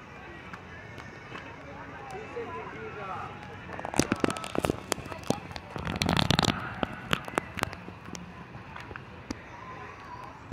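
Water-park background of distant children's voices, with two bursts of crackly water splashing, about four and about six seconds in, as a child steps across floating foam pads in a shallow pool.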